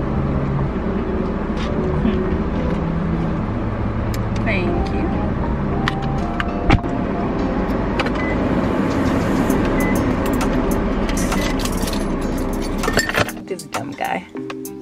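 Music with singing plays inside a car cabin over the car's steady low road rumble. There is a single sharp click about halfway through, and the sound drops away shortly before the end.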